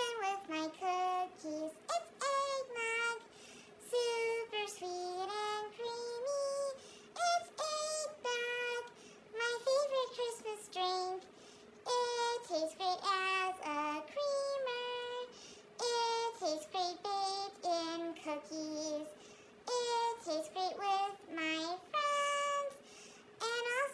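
A woman singing an eggnog song in a high-pitched, chipmunk-style voice, in short sung phrases with brief pauses and no accompaniment.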